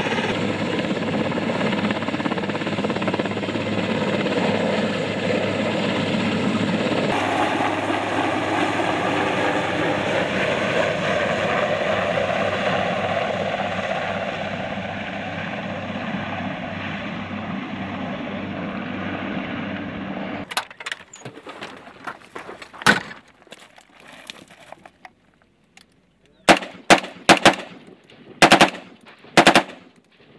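Helicopter turbines and rotor running steadily for about twenty seconds, then an abrupt change to rifle gunfire: scattered single shots and quick groups of shots near the end.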